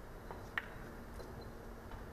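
Quiet hall room tone with a steady low hum, broken by one sharp click about half a second in.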